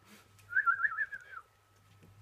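A warbling whistle rising and falling rapidly in pitch for about a second, then thinning into a faint held tone.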